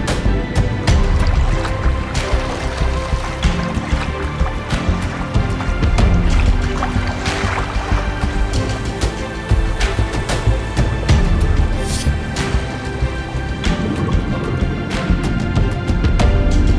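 Soundtrack music with sustained low notes and occasional sharp percussive hits.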